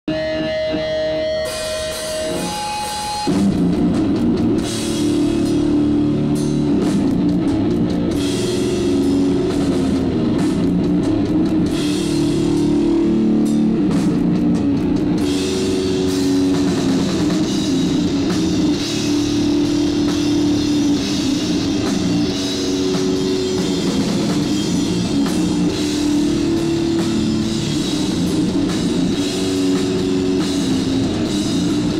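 Death/doom metal band playing live: heavily distorted guitars and bass holding slow, sustained chords over a drum kit. A couple of held single tones open, and the full band comes in loud about three seconds in.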